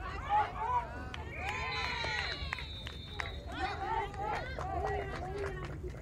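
Several voices of softball players and spectators shouting and calling out at once during a live play, loudest in the first second, with a brief high held call around the middle.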